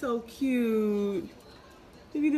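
A woman's voice in a drawn-out, sing-song tone: a short syllable, then one long held note that dips at the end.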